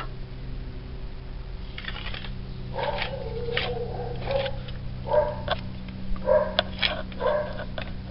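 A dog barking repeatedly in short calls, starting about three seconds in, over a steady low hum.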